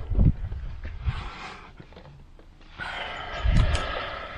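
Car rear door being handled and opened: low thumps near the start and again near the end, with rustling and wind rumbling on the microphone.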